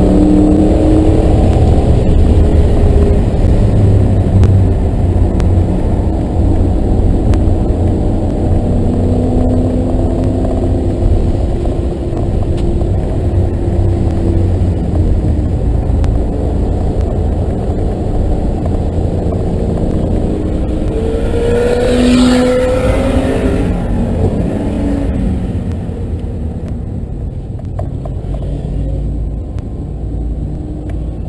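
2009 Ford Mustang GT's 4.6-litre V8 heard from inside the car while lapping a race track, its pitch shifting with the throttle and getting quieter toward the end as the car slows. About two-thirds of the way through comes a brief louder burst with a rising pitch.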